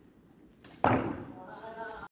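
A sudden loud whoosh of air close to the microphone a little under a second in, fading quickly, then a person's voice holding a drawn-out call near the end.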